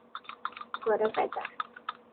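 Rapid, irregular clicking and tapping of a small glass jar being handled up close, with a short vocal sound about a second in.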